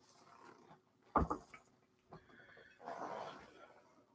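A single short, sharp knock about a second in, then a softer breathy noise near the end, over a faint steady hum.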